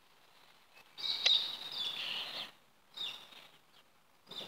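Birds chirping outdoors, high and short, mostly between about one and two and a half seconds in, with the loudest call just after a second.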